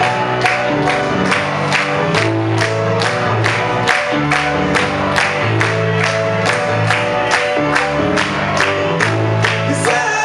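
Live band music: a Korg 01/W synthesizer keyboard and an electric bass guitar playing sustained chords and bass notes over a steady beat of about two and a half strikes a second.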